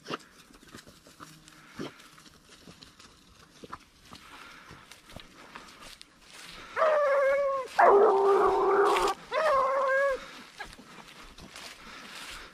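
Ariégeois hound giving voice: three drawn-out bays of about a second each, close together partway through, over the rustle of grass.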